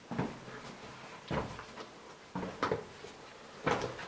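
Slow footsteps on a stone floor, about one step a second, echoing in a narrow stone passage.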